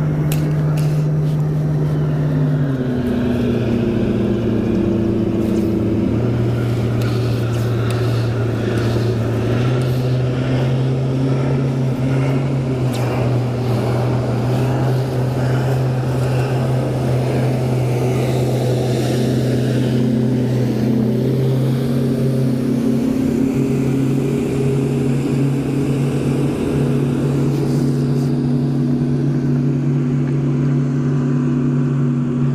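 Garmin Force bow-mounted electric trolling motor running steadily, a steady whine whose pitch steps down a few seconds in and shifts a few more times as its speed changes.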